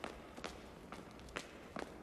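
Faint footsteps on a street at night: a few soft, irregularly spaced steps over a low background.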